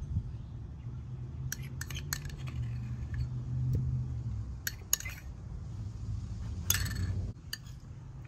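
Metal spoon clinking a few times against a small ceramic bowl and scraping sauce onto the food, with some clicks in quick little runs, over a steady low rumble that fades out near the end.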